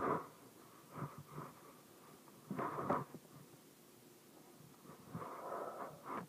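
A puppy making short breathy huffs and grumbles, four in all, the last one longer, near the end.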